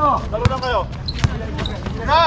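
A basketball bouncing twice on a hard outdoor court as it is dribbled, the bounces about three-quarters of a second apart, with players' shouts in the first part.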